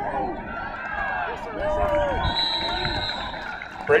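Many voices of football spectators and sideline players shouting and cheering over one another during a punt.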